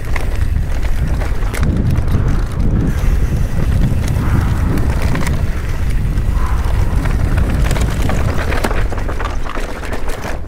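Mountain bike riding fast down dirt singletrack: tyres rolling over the dirt with frequent clicks and rattles from the bike, under heavy wind buffeting on the microphone.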